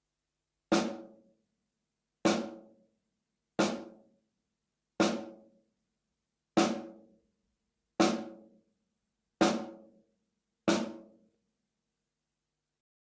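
Snare drum struck with a drumstick in eight single, evenly spaced strokes, about one every second and a half, each with a short ring that dies away quickly. The strokes are played from the wrist rather than the arm.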